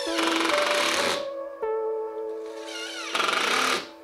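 Cordless impact driver hammering screws into a wallboard panel in two bursts of about a second each, the second shorter and winding down as it stops, over background music.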